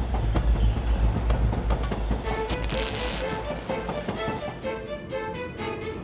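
Background music over a cartoon sound effect of a train running along its track, a steady low rumble, with the music's melody coming in about two seconds in.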